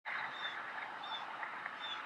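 A bird giving a short high call three times, about every three quarters of a second, over a steady background hiss.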